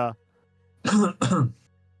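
Two short wordless vocal bursts from a man about a second in, a brief throat-clearing sound, over a faint steady low hum.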